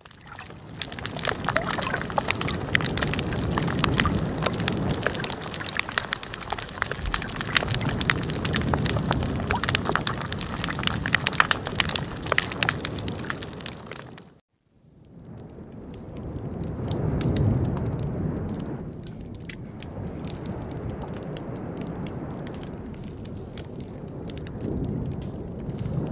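Underwater recording of a living coral reef: a dense crackle of fish calls and clicks over a low wash of surface waves. After a brief break a little past halfway, it changes to the dying part of the same reef. Only a few snapping shrimp click sparsely over the low rumble of the waves, the sound of a reef under stress.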